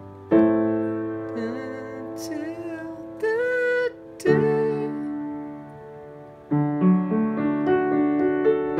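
Yamaha upright piano playing chords in E minor: long held chords struck a few seconds apart, then shorter chords in quicker succession near the end.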